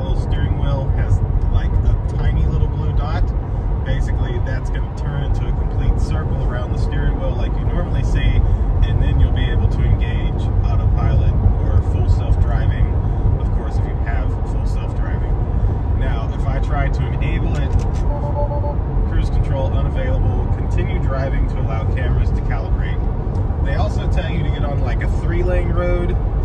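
Steady low road and tyre rumble inside the cabin of a Tesla Model 3 driving at highway speed, with a man's voice talking over it.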